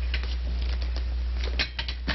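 A few scattered clicks and knocks as a metal microphone stand is handled and moved, with more of them near the end, over the steady low hum and hiss of an old film soundtrack.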